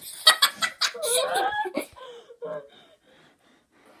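Children laughing loudly in high-pitched bursts for the first two seconds, then dying away to quiet.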